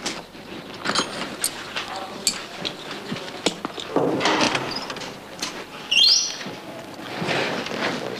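Handling and rummaging noises with scattered clicks and knocks, then a wooden office cupboard door being opened about six seconds in, with a short rising squeak.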